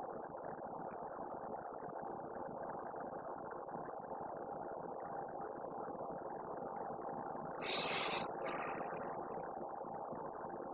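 A steady low mechanical hum, with a brief hiss about eight seconds in.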